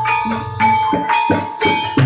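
Live Javanese gamelan-style music: hand drum strokes and struck metal percussion under a held high tone, with jingling bells.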